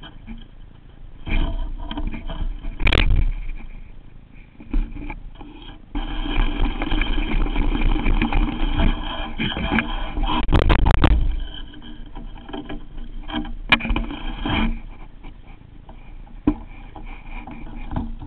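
Baitcasting reel on a BFS rod being cranked, heard up close through the rod-mounted camera: a steady gear whir from about six seconds in to near fifteen seconds, with knocks and clicks of the rod and reel being handled, the loudest knocks just before the whir stops.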